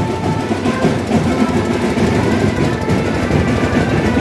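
Rapid marching-band drumming, snare and bass drums, in a loud, steady din of street procession noise.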